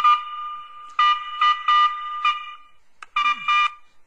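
Motorola Minitor VI pager alert tone played back from the programming software's stock custom-alert .wav file: quick high electronic beeps in runs, breaking off briefly about a second in and again near three seconds.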